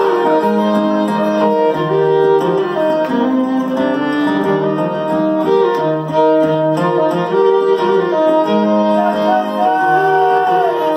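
Live country band playing an instrumental break, a fiddle bowing long, held notes over the band's accompaniment.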